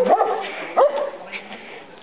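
A dog barking twice in short, high yips, the second about three-quarters of a second after the first, then quieter.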